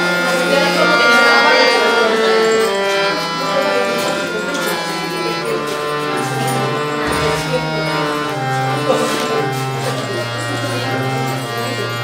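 Devotional song music: an instrumental passage of long held notes over a low bass line that steps from note to note.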